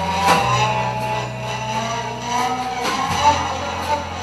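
Live post-rock band playing: sustained low bass notes that change pitch twice, with tones above them and a few sharp percussive hits.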